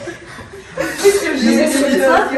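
People chuckling softly, starting a little under a second in after a brief lull.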